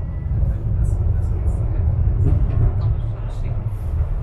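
Steady low rumble of a funicular car running up its rails, heard from inside the car.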